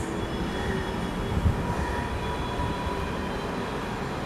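Steady rumbling background noise with a faint high hum running through it.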